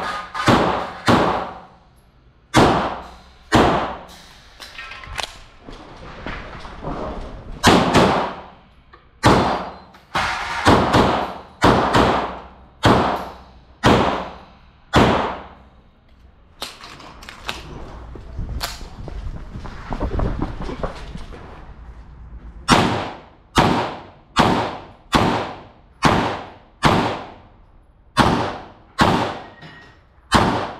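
Semi-automatic pistol firing a long string of shots, mostly in quick pairs about half a second apart, with a pause of several seconds past the middle before the firing resumes. The shots ring on in the hall of an indoor range.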